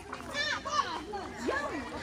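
Children's voices talking and calling in the background, fainter than the close speech just before.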